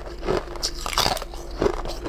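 Close-miked eating: a run of irregular crisp, crunchy bites and chewing of a translucent, jelly-like food.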